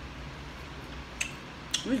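Chewing a mouthful of fried food, with two short crisp clicks, one about a second in and one near the end, over a steady low hum; a voice starts at the very end.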